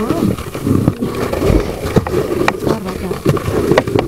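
Footsteps climbing snow- and ice-covered wooden stairs: irregular low rumbling and scuffing, a few sharp knocks and one heavier thud about a second and a half in.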